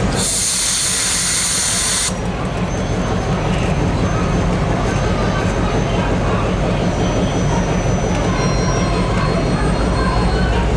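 EMD FP7 diesel locomotive running with a steady low engine rumble as it slowly pulls a passenger train. A loud burst of air hiss fills the first two seconds, then cuts off.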